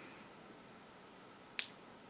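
A near-silent pause with a single short, sharp click about one and a half seconds in.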